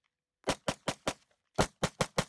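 Walther PPX semi-automatic pistol fired in rapid succession: four quick shots, a short pause, then two more near the end.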